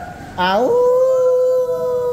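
A person's voice giving a long howl-like 'aaooo' call that rises sharply in pitch, then holds on one steady note.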